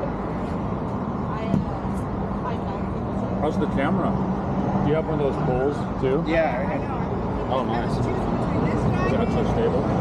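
Men talking in a muffled conversation, with a steady low engine hum underneath.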